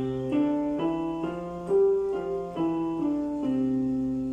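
Piano played slowly with both hands together in a five-finger exercise: about nine even notes, two a second, stepping up five keys and back down.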